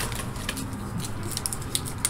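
Faint rustling and a few light clicks of snack wrappers being handled as a packaged candy bar is picked out of a box.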